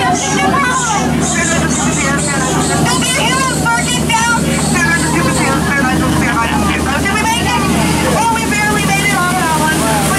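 Overlapping passenger voices and chatter on an open tour boat, over the steady low hum of the boat's motor.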